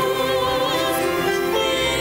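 Stage-musical ensemble of cast voices singing with a live pit orchestra, with one part wavering in vibrato on a held note early on.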